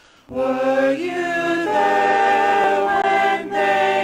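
Small mixed vocal ensemble singing in harmony, apparently unaccompanied, entering together after a brief silence just after the start and holding long sustained chords, with a short break near the end.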